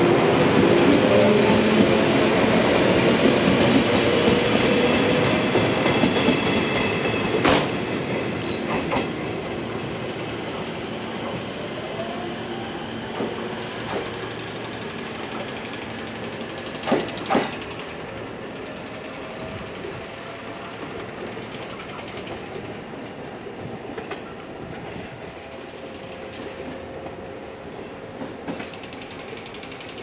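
Yellow electric multiple-unit train pulling away and running off into the distance, its rumble fading steadily. There is one sharp click about seven seconds in and two close together about seventeen seconds in.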